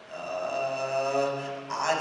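A woman's voice drawing out one long, steady vowel, 'aaa', for about a second and a half, chant-like, before breaking into the next syllable near the end. It is a spoken hesitation, the Romanian infinitive marker 'a' stretched while she searches for the next verb.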